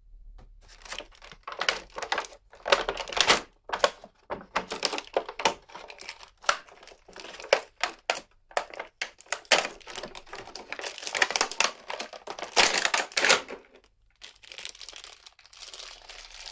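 Plastic figure packaging crinkling and tearing as it is unwrapped by hand, in quick irregular handfuls with a short pause near the end.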